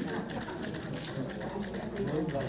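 Links of a silver chain of office clicking and clinking against each other as it is lowered around a man's neck and adjusted by hand, with low murmured voices beneath.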